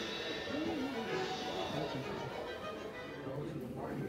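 Music with a voice speaking over it, from the soundtrack of a film projected on an exhibit screen.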